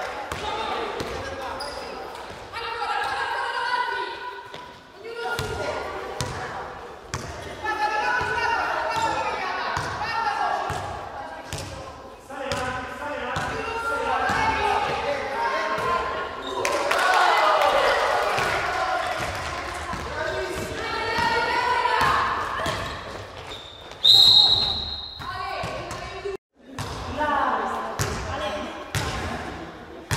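Basketballs bouncing on a gym floor with sneaker steps and the voices of players and onlookers in an indoor gym hall. About 24 seconds in, a short, loud blast of a referee's whistle.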